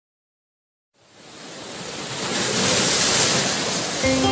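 Silence for about a second, then a surf-like rush of noise swells up and peaks near the end. It is the opening effect of a chillout music track.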